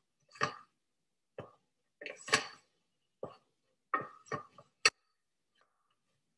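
A spoon stirring and scraping stiff choux dough in a stainless steel saucepan: irregular knocks and scrapes against the pan, the loudest a little over two seconds in, stopping about five seconds in. The dough is being cooked on the heat until it leaves a film along the bottom of the pan.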